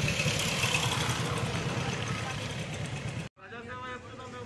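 Street noise with an engine running and voices. It cuts off abruptly a little after three seconds in, and a person's voice follows.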